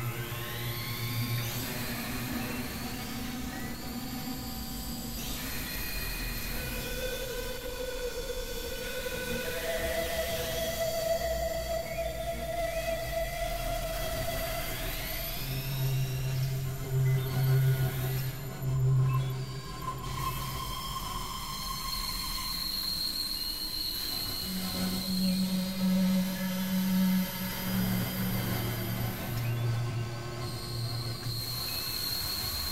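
Layered experimental electronic music: dense overlapping sustained drones and tones, with curving upward glides near the start and again about halfway through. A low pulsing bass tone comes and goes, loudest in the middle and near the end.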